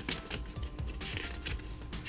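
Faint background music with light rustling and ticking of paper as the pages of a printed router installation guide are turned by hand.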